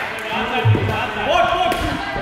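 Muay Thai strikes landing with dull thuds, the strongest about two-thirds of a second in and a lighter one near the end, amid shouting from ringside.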